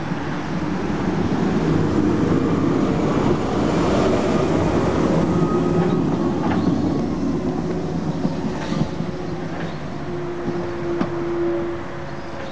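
An electric rack-railway railcar on the Riggenbach rack passes close by. A rumble with a steady hum is loudest in the first half and eases off as the car moves away, with a few sharp clicks near the end.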